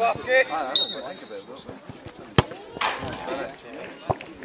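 A football struck once in a penalty kick: a single sharp thud a little past halfway.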